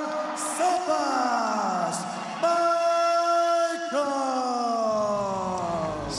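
Ring announcer calling out the winning fighter's name in long, drawn-out bellowed notes, each held and then sliding down in pitch. Music with a deep bass comes in near the end.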